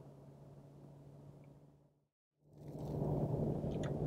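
Faint steady low drone of a car's cabin noise with a low hum. It fades out to total silence about two seconds in, then fades back in louder.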